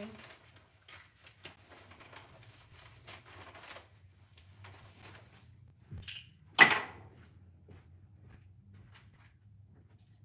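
Paper rustling and small clicks as sublimation paper is worked free of a roll in its cardboard dispenser box, followed about six seconds in by a knock and then a single loud, sharp crack. A low steady hum runs underneath.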